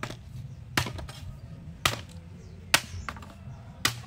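A machete chopping a green bamboo pole laid across a wooden log: five sharp strikes, about one a second, the middle one the loudest.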